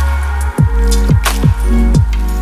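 Electronic background music with a steady beat of deep kick drums, over sustained synth tones and crisp percussion hits.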